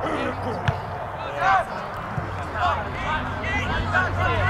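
Distant shouting voices of players and spectators carrying across a soccer field: several short calls. A single sharp thump comes a little under a second in.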